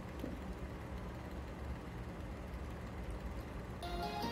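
Low steady rumble of background noise with no clear pattern. Music comes in right at the end.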